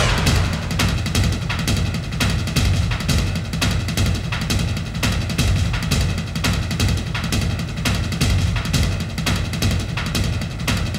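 Dramatic background score music with a fast, steady drum beat.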